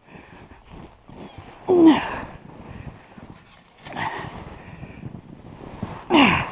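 A woman's wordless sounds of effort while she struggles in deep snow after a fall: a short falling 'oh' about two seconds in and a breathier one about four seconds in, between faint rustling of snow and clothing as she works snow out from under her clothes.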